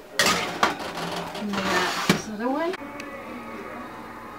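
A metal baking sheet clanking and scraping as it is slid onto an oven rack, with a few sharp knocks and a short rising pitched sound about two seconds in. Faint background music follows from about three seconds in.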